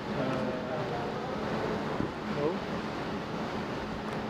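Indistinct voices in the background over a steady low hum.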